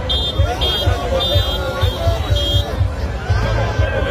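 Street crowd talking and shouting over music with a steady thumping beat. Five short high-pitched tones about half a second apart sound over it in the first three seconds.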